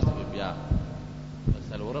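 A man preaching in Pashto, with a steady electrical hum from the recording beneath his voice. Two short low thumps come in the pause, about a second and a second and a half in.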